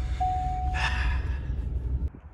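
Low engine rumble inside a Ford pickup's cab at low revs, with a steady high warning tone for about a second, the seatbelt reminder chime, and a short breath near the middle.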